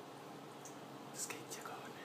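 Thin stream of tap water trickling into a ceramic sink, faint and steady, with a few brief soft hissy sounds a little past the middle.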